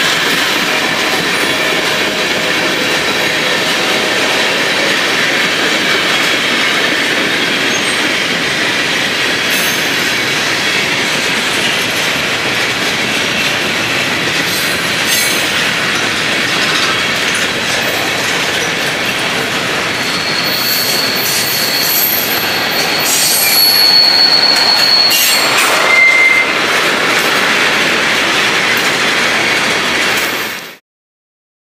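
Freight cars of a manifest train rolling past: a steady rumble of steel wheels on rail with scattered clacks. A high wheel squeal rises about two-thirds of the way through and lasts a few seconds, followed by a brief lower squeal.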